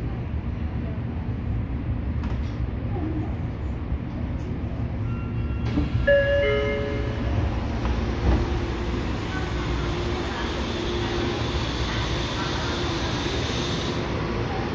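Tokyo Metro Namboku Line subway car rumbling to a stop at a station. About six seconds in, the doors open with a sudden hiss and a short chime, with a couple of knocks. After that comes steady platform noise: a hum over a hiss.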